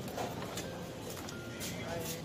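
Indistinct chatter of several people in a busy market, with a steady background hubbub and a few small clicks.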